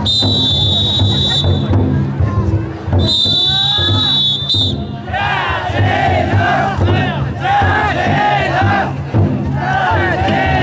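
Two long, shrill whistle blasts, then many men chanting and shouting together as festival drum-float bearers. A steady low beat of the float's taiko drum runs under it all.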